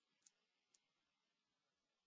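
Near silence, with two faint short clicks about half a second apart in the first second.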